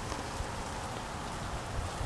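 Steady outdoor background noise: an even hiss with a low rumble underneath and no distinct events.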